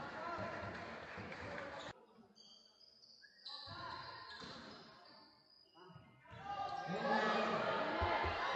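Basketball game sound in an echoing gym: a basketball bouncing on the hardwood court amid players' voices. The sound cuts off abruptly about two seconds in, stays quieter for a few seconds, and comes back louder near the end.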